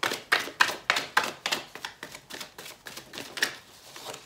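A deck of oracle cards being shuffled by hand: a run of sharp papery clicks and slaps, several a second, thinning out and stopping shortly before the end.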